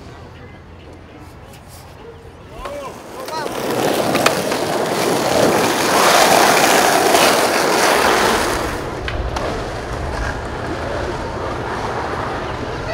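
Several skateboards rolling downhill on asphalt. The wheel noise builds from about three seconds in, is loudest around the middle, then eases to a steadier roll. A few short calls or whoops come just before the rolling starts.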